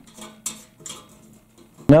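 A few faint metallic clicks in the first second from a French horn's brass rotary valve and its cap being handled and checked for play.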